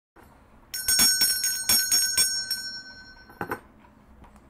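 A small bell rung about nine times in quick succession, its high tones ringing on between strikes, then two more quick rings near the end.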